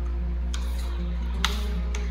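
A few sharp computer keyboard keystrokes, the loudest about one and a half seconds in, over soft background music and a steady low hum.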